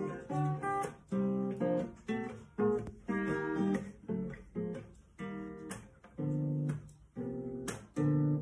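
Solo acoustic guitar with a capo, played unaccompanied: a slow run of picked and strummed chords, each ringing out and dying away before the next, about one or two a second.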